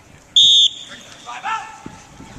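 A single short, loud blast on a sports whistle, a steady high tone, signalling the start of a sprint. A brief shout follows about a second later.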